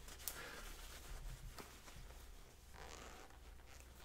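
Faint rustling and scraping of shirt fabric as a fountain pen is pushed down into a snug shirt pocket, with a light tick just after the start. It goes in with a little effort.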